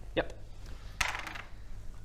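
Dice rolled onto a wooden tabletop: a brief clatter about a second in.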